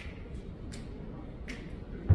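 Finger snaps counting off the tempo before a jazz band comes in: three sharp, evenly spaced snaps about three-quarters of a second apart over faint room noise.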